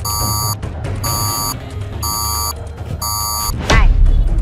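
Handheld security metal detector wand beeping in alarm as it picks up metal on a person: four short beeps about a second apart. Background music plays under it, and near the end comes a loud sweeping sound with a deep thud.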